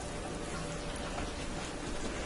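A glazed pork roast sizzling on the rotisserie spit in a hot countertop rotisserie oven, with a steady, fine crackle.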